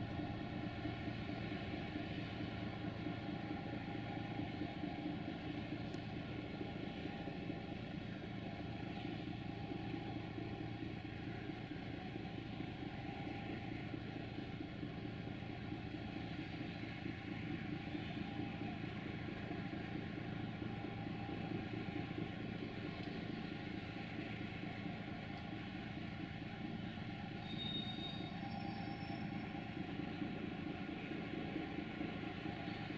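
Diesel locomotive engines idling: a steady, even engine hum with a fine throbbing pulse that does not change.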